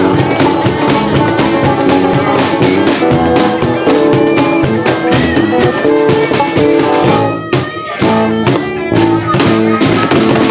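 Live acoustic band playing an instrumental passage: a cajon beat, strummed acoustic guitar, electric bass and a harmonica carrying the melody. The music thins out briefly about seven and a half seconds in, then comes back in full.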